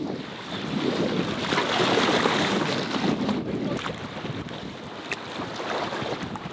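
Strong wind buffeting the microphone, with choppy lake water, swelling for a couple of seconds and then easing. A single light click comes about five seconds in.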